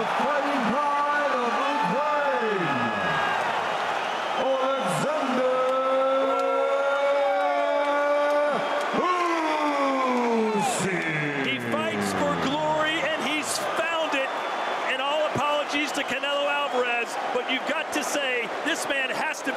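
A ring announcer's amplified voice echoing through the arena, drawing out the new heavyweight champion's name in long held notes; around the middle one long note slides slowly down in pitch.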